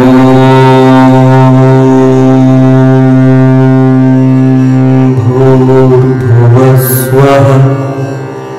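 A long, loud, low horn-like tone with a rich stack of overtones, held dead steady for about five seconds, then wavering and breaking up before it fades out at the end, part of devotional music.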